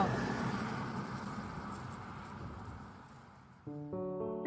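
A car driving along a lane and away, its engine and tyre noise fading steadily. Near the end, gentle piano-like music starts.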